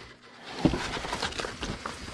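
Paper and a packaged costume rustling and crinkling as they are handled in a cardboard box of scorched papers, with irregular light clicks and one sharper tap just under a second in.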